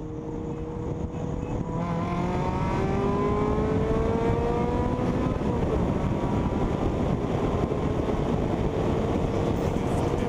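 Acura Integra sedan's engine accelerating hard, heard from inside the cabin: the engine note climbs steadily and grows louder, drops once about five and a half seconds in at an upshift, then pulls upward again over steady road noise.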